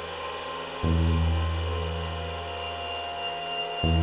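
Ambient electronic music on software synthesizers. A deep bass note strikes about a second in and again near the end, three seconds apart, each time swelling and slowly fading under sustained pad tones. A thin high tone joins about halfway through.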